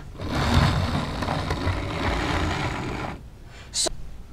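Old Hornby HST power car's original ringfield motor running the model locomotive along the track, a steady mechanical run that stops about three seconds in as the loco comes to a halt. Unserviced for some 10 to 15 years, it runs a little on the rough side but is fairly quiet for a ringfield motor.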